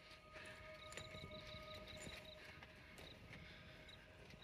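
Faint night ambience: insects chirping in short, evenly repeated high pulses, with scattered small clicks and a faint steady tone that stops about halfway through.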